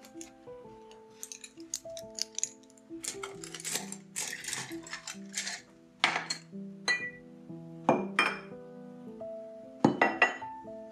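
Soft background music with held notes, over light clinks, rattles and clicks of painting supplies being handled on a desk, such as paintbrushes and a glass water jar. The handling clusters in the middle and ends with a sharper click.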